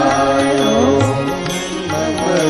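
Indian devotional music to Shiva: a gliding sung vocal line over instrumental accompaniment.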